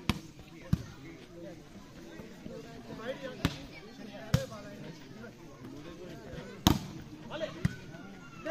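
Volleyball being struck by players' hands and arms during a rally: six sharp slaps at uneven gaps, the loudest about two-thirds of the way through, over players' and onlookers' voices.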